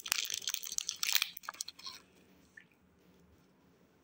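Foil candy wrapper crinkling and crackling as a chocolate sweet is unwrapped, stopping about halfway through.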